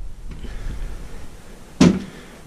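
Low rumble of a hand-held camera being swung around and carried, with one sharp knock near the end.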